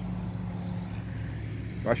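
Diesel engine of a motor grader running with a steady low drone as it works the road bed. A man's voice begins speaking just before the end.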